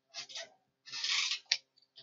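A few short scratchy rubbing strokes: two brief ones, then a longer one about a second in, followed by a sharp tick.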